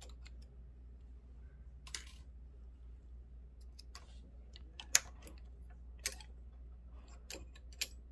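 Faint, scattered small clicks and ticks from a hand tool and steel needles being handled at the needle bars of a multi-needle embroidery machine as the needles are loosened and pulled out; the sharpest click comes about five seconds in.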